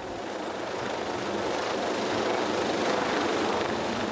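HM Coastguard AgustaWestland AW139 helicopter flying close over a yacht: a steady rushing rotor and engine noise that grows slowly louder.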